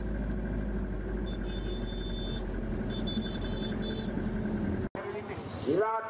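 A steady engine rumble with a faint high tone coming and going. It cuts off suddenly about five seconds in, and near the end a voice starts up with sliding pitch.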